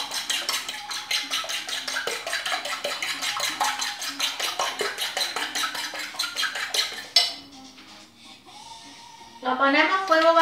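Eggs being beaten by hand with a fork in a ceramic plate: a fast, even clicking of the fork against the plate, about six strokes a second, that stops suddenly about seven seconds in.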